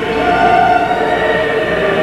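Background choral music: a choir holding long, sustained notes together.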